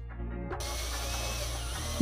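Cordless drill driving a hole saw into a wooden board, starting about half a second in and then cutting steadily. It is boring in from the second side to meet a half-depth cut, which avoids tear-out.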